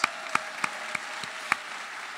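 Audience applauding: a dense, steady patter of clapping with a few single sharper claps standing out.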